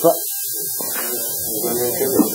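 Brief, indistinct speech, soft and broken, over a steady recording hiss and low hum.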